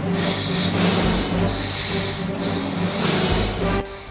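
Music under the mechanical respirator breathing of a masked film villain: three long, hissing breaths about a second apart.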